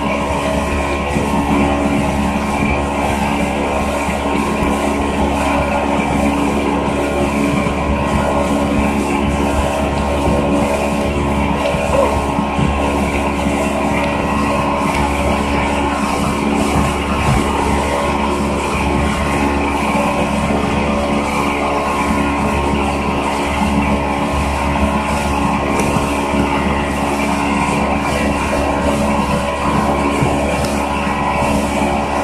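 Motorboat engine running at a steady speed, a constant drone with no changes in pitch.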